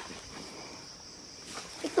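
Quiet outdoor ambience with a steady, high-pitched insect drone; a man's voice starts near the end.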